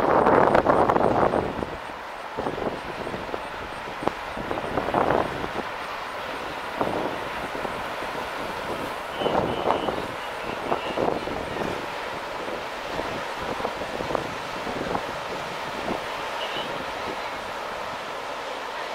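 Wind gusting on the microphone, loudest in the first second or two, over a steady low rumble from the SS Badger car ferry as it pulls away.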